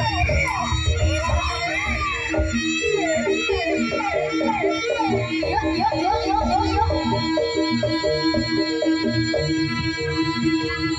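Javanese jaranan music: a wavering melody that swoops up and down in pitch over steady held gamelan notes and drumming.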